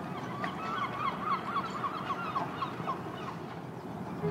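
A flock of birds honking: a rapid flurry of short calls for about two seconds, over a steady low rumble.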